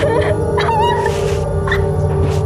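Suspenseful film score with a sustained low drone, over which a woman gives short, high, strained whimpering cries as she is held in a chokehold.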